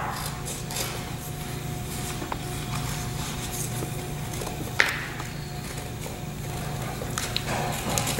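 Scissors cutting through construction paper: faint, scattered snips over a steady low hum, with one sharper click about five seconds in.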